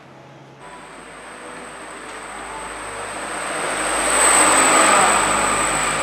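A rushing noise with a steady high whine, most likely an added sound effect. It starts abruptly under a second in and swells to its loudest about four to five seconds in.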